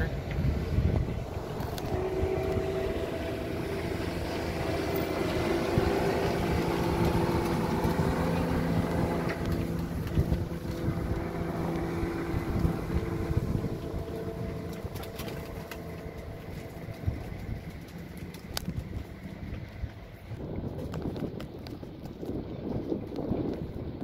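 Small motorboat's engine running at speed as it passes close by, a steady drone that fades away from about two-thirds of the way through.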